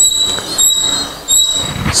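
Sound-system feedback squeal: a high, steady whistle-like tone with a fainter overtone above it, breaking off and coming back in several short stretches.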